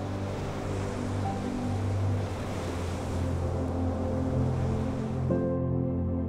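Ocean surf washing against the shore over slow ambient music with long held notes. The surf cuts off abruptly near the end, leaving only the music.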